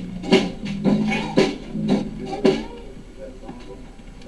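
Drum kit and guitar playing together, drum hits about twice a second over held low chords; the playing stops about two and a half seconds in.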